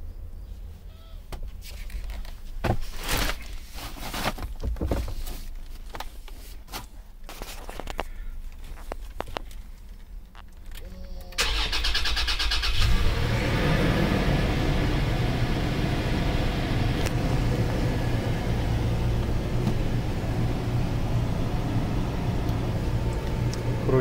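Toyota Prado's 4.0-litre V6 started with the push button: about halfway through, the starter cranks briefly, then the engine catches and settles into a steady idle. Before that, light clicks and knocks of handling in the cabin.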